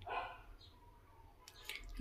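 A faint, brief animal call right at the start, then a few light clicks near the end as plastic tubes are handled.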